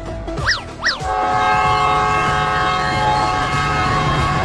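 Two quick rising-and-falling whistle glides, then, about a second in, a train horn sounds: a steady chord of several notes held for about three seconds over a low rumble.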